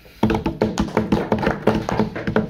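Rapid, uneven knocking of hands on tabletops, several knocks a second starting about a quarter second in: table-knocking applause at the close of a speech.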